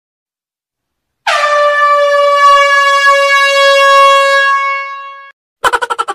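A single long horn blast on one steady pitch, starting abruptly about a second in and lasting about four seconds, dying away near the end.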